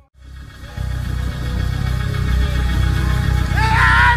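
Loud, bass-heavy live church music, starting about a second in after a brief gap. A man's voice shouting into a microphone comes in near the end.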